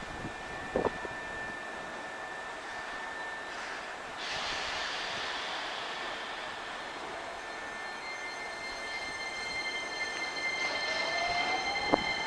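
Hankyu 9300-series electric train pulling out of the station: steady rolling sound with high whining tones from the motors and wheels. A hiss of air starts suddenly about four seconds in, and a rising whine builds near the end.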